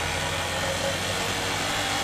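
Motorcycle engine running steadily at low speed, heard from the rider's own bike.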